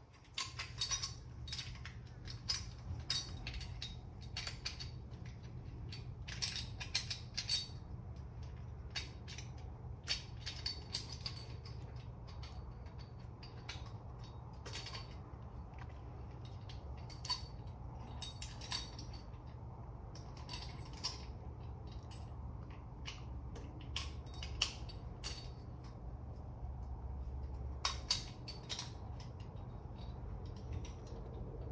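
Small metal hand tools and parts clinking and clicking irregularly, many light knocks spread through the whole stretch, over a steady low hum.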